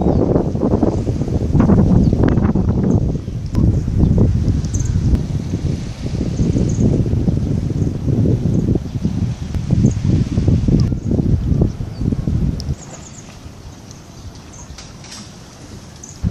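Wind buffeting the microphone: a loud, irregular low rumble that drops away about three-quarters of the way through, leaving a quieter rustle.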